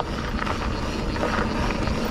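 Mountain bike rolling along a dirt singletrack: steady tyre and trail rumble with light clatter from the bike, and wind buffeting the microphone.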